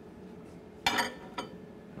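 Bowls clinking: a short, ringing clink about a second in, then a fainter knock shortly after.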